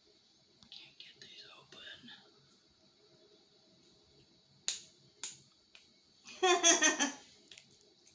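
Two sharp plastic clicks as a new acrylic paint marker's sealed cap is pried and twisted by hand, then a short laugh.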